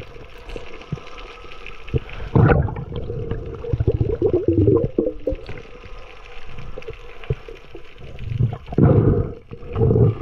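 Water gurgling and sloshing around a spearfisher's underwater camera while a speared fish is hauled in on the shooting line, with two louder rushing surges, about two and a half seconds in and near the end.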